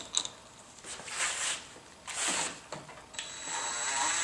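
Small electric impact gun's motor whining steadily as it spins a nut down onto a UTV differential's output shaft, starting about three seconds in. Before that, light clicks and scrapes of a washer and nut being fitted by hand.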